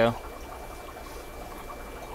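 Quiet steady hiss of running and bubbling aquarium water from filters and air pumps, with a faint steady hum underneath.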